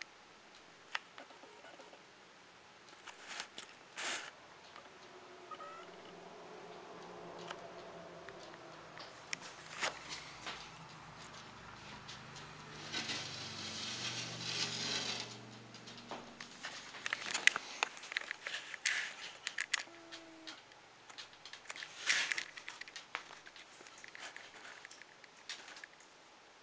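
Faint, scattered scratching, rustling and clicking of a monitor lizard moving about its enclosure, its claws catching on wood and the glass-edged ledge, with a longer rustle about halfway through.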